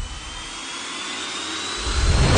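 A rising whoosh sound effect in the soundtrack: a steady hiss with a thin tone climbing slowly in pitch, heard while the bass drops out. The bass comes back just before the end.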